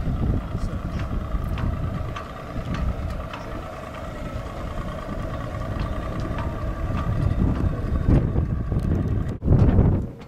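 Wind buffeting the microphone in uneven gusts, with a faint steady hum underneath that stops about eight seconds in.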